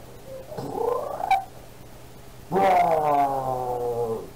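A man's voice making two drawn-out, wavering non-word vocal sounds: a short one rising in pitch about a second in, then a longer, louder one from the middle that slowly falls in pitch. A steady low hum from a poor-quality recording runs underneath.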